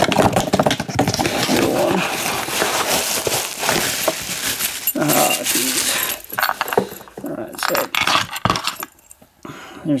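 Metal keys jangling and clinking on a key ring as they are sorted through by hand, dense for the first few seconds, then in shorter bursts, going quiet near the end.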